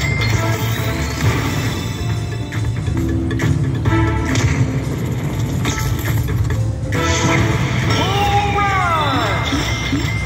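Slot machine bonus-round music and electronic sound effects from a Konami New York Nights game, a pattern of short repeated notes over steady tones. About eight seconds in, a cluster of falling chime glides plays as the Bull Rush feature collects the coin values into the total win.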